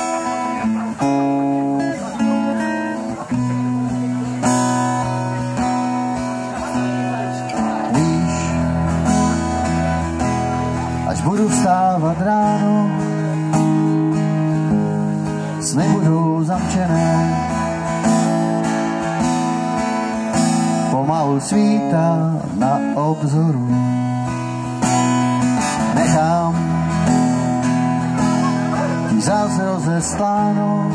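Acoustic guitar strumming chords in the instrumental introduction of a song, with a wavering lead melody weaving over it in several short phrases.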